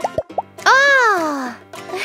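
Cartoon sound effects over children's background music: three quick plopping pops in the first half second, then a loud cartoon vocal cry that rises and falls in pitch for almost a second, and two more pops near the end.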